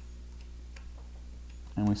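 A few faint ticks of a small screwdriver working a relay module's screw terminal, over a steady low hum.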